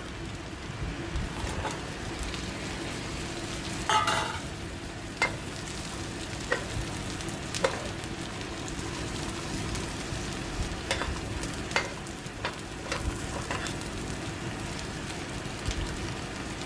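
Oil sizzling steadily in a nonstick wok as aromatics sauté and pre-fried prawns are stir-fried. A louder burst of sizzle and clatter comes about four seconds in, when the prawns go in. A metal turner clicks and scrapes against the pan about a dozen times as it stirs.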